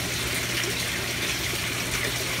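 Steady rush of water flowing in an aquaponics tank, with a low steady hum underneath.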